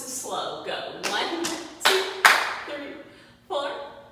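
Hand jive: two sharp hand claps about half a second apart near the middle, over a woman's voice keeping the beat.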